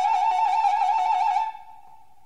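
Recorder (flauta de bisel) holding a high note with a fast trill, which stops sharply about a second and a half in, leaving a faint lingering tone.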